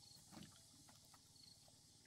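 Near silence: faint knocks of a bamboo raft's poles underfoot as someone walks barefoot across them, the clearest about half a second in. A short, faint high chirp comes twice.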